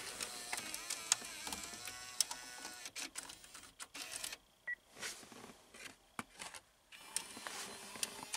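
In-dash six-disc CD changer mechanism of a Pontiac Aztek's factory stereo running, whirring and clicking as it cycles to take in a disc, with a short beep about halfway through.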